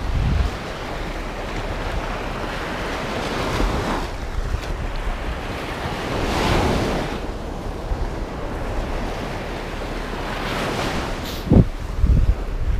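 Wind buffeting the microphone over the wash of sea waves on the shore, swelling a couple of times. A short thump near the end.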